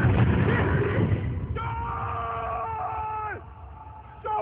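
A loud, low rumbling commotion, then one long high cry, held steady for about two seconds before it drops off in pitch.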